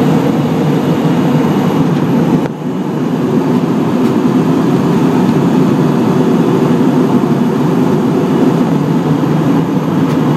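Steady, deep cabin noise of a jet airliner in flight, engines and airflow heard from inside the passenger cabin. It dips briefly about two and a half seconds in.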